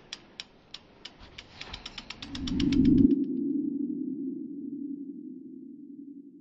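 Logo sting sound effect: a run of sharp ticks that come faster over a rising swell. At about three seconds the ticks stop and the swell settles into a low hum that slowly fades.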